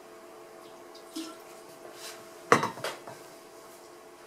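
A sharp clatter of something hard knocked or set down, about two and a half seconds in, followed by a couple of lighter knocks, over a faint steady hum. A smaller knock comes about a second in.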